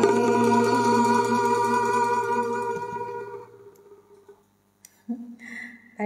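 Instrumental backing music for a chèo song ending on a long held chord that fades away a little past halfway through, leaving a brief near-silent pause with a faint click.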